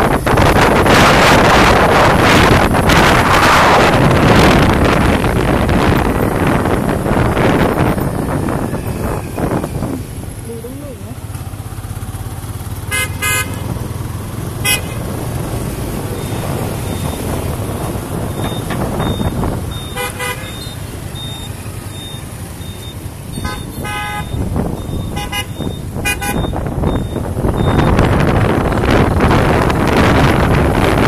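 Wind buffeting the microphone on a moving vehicle, loud for the first ten seconds and again near the end. In between, a steady low traffic hum with several short vehicle-horn toots, three of them in quick succession near the end.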